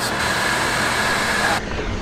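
Steady rush of fast water pouring out of a dam into the spillway, with a faint steady whine running through it. Near the end it cuts abruptly to a duller, quieter rush.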